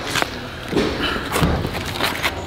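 A few sharp taps and scuffs of hands and sneakers on asphalt as a man drops into push-up position, with a brief vocal sound among them.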